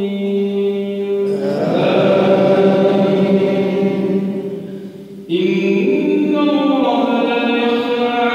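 An imam's melodic chanted recitation in the tahajjud night prayer, with long held notes and a brief break about five seconds in.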